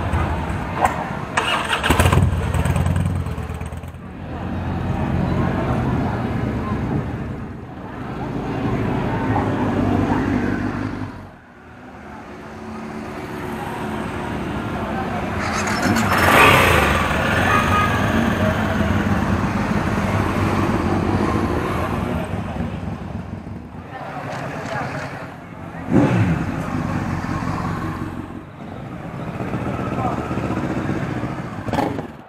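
Several motorcycles riding past one after another, their engines running and swelling louder and fading as each bike goes by, with people's voices mixed in.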